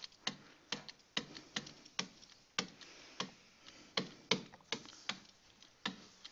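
Stylus tapping and clicking against a pen-input screen while writing out an equation by hand: faint, irregular sharp clicks, roughly three a second.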